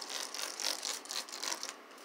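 Trigger spray bottle of Turtle Wax Ice Seal N Shine hybrid spray wax being spritzed onto a painted panel: a run of quick, short hissing sprays, several a second.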